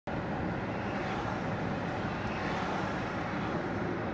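Steady in-cabin sound of a 2016 BMW 750i xDrive's V8 running gently at low speed under road and tyre noise, even in level throughout.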